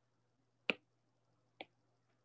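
Two short, sharp taps of a stylus on a tablet's glass screen, about a second apart, the first louder than the second.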